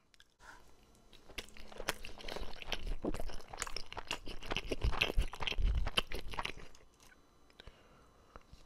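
A mouthful of sushi roll chewed close to a microphone: a dense run of short, quick clicks and crunches that stops about a second before the end.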